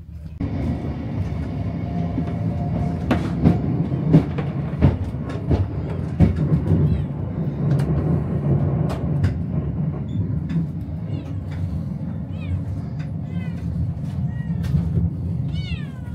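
Passenger train under way, heard from inside the carriage: a steady low rumble with irregular knocks from the wheels and running gear. From about seven seconds in, a cat meows several times in short calls.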